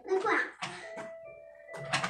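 Soundtrack of an animated TV show: a brief bit of a character's voice, then a single steady held musical tone.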